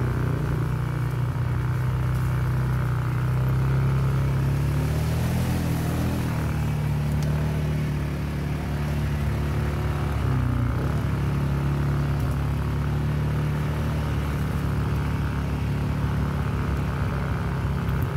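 ATV engine running steadily while riding a dirt trail, its pitch rising and dipping a couple of times as the speed changes, around five and eleven seconds in.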